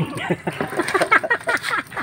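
Indistinct voices talking in short, broken bursts.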